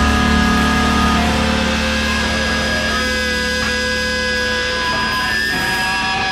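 Heavy rock band's distorted electric guitars and bass letting a chord ring out, with several high held tones sounding over it and no drum beat, slowly easing in level.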